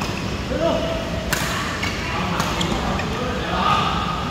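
Badminton rackets striking a shuttlecock during a rally: a few sharp cracks, the loudest a little over a second in, then two or three more about half a second apart.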